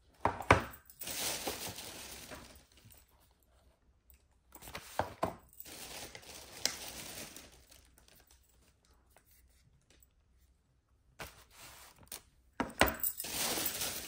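Plastic grocery tubs knocking as they are set down on a table, with plastic shopping bags rustling and crinkling. This comes in three bouts, each opening with a sharp knock, and there is a quiet gap past the middle.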